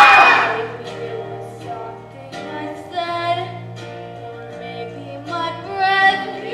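Young voices singing a stage-musical number over instrumental accompaniment, with held notes; loudest in a swell at the very start.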